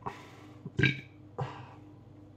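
A man burps briefly about a second in, followed by a smaller, quieter throat sound.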